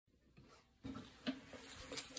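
Faint handling noise: a soft thump just under a second in, then a couple of light knocks as an acoustic guitar is picked up and moved into place.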